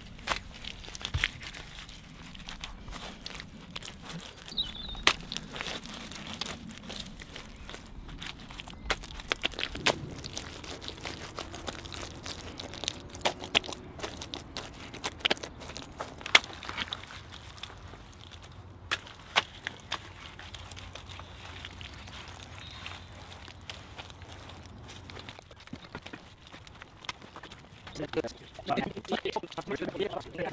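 Handfuls of wet cob, a mix of sand, clay and straw, being pressed and slapped by gloved hands onto a woven hazel wattle wall: irregular squelches and crunches with scattered sharp slaps.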